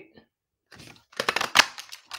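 A hand-held craft punch cutting through cardstock: a quick run of sharp clicks and paper crunching, starting about a second in.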